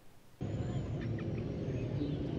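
Near silence, then about half a second in a steady outdoor background ambience begins: an even wash of noise with a low hum and a few faint thin tones.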